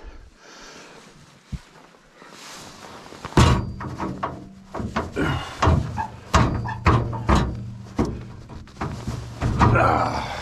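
Steel engine-compartment side door on a Caterpillar D8T dozer slammed shut about three and a half seconds in, followed by a run of metal knocks and clanks.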